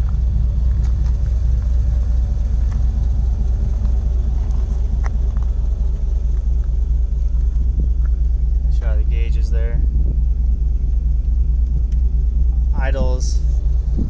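A 2017 GM L83 5.3-litre V8 swapped into a 2004 Jeep Wrangler LJ, idling with a steady low rumble.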